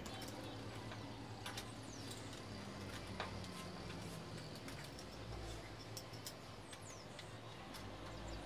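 A few faint, sharp clicks of a hand tool on the fork clamp bolts as they are worked loose, over a low steady hum, with a few faint high chirps.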